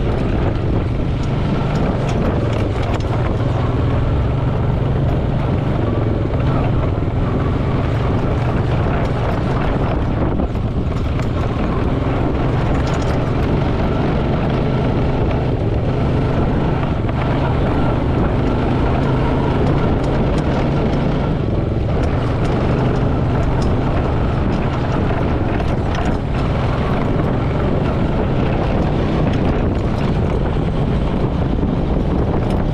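ATV engine running as a steady low drone while the machine drives along a rough grassy trail, with wind rumble on the microphone.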